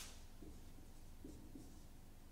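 Marker pen writing on a whiteboard: a few short, faint strokes as a number is written out.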